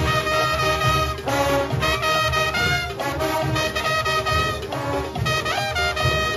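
Junkanoo band music: brass horns playing a melody over fast, steady drumming.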